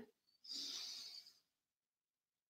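A faint in-breath through the nose: one short hiss starting about half a second in and lasting under a second, then near silence.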